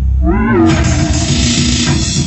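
Loud live rock band playing, with a pitched wail that rises and falls in a wavering arc about half a second in.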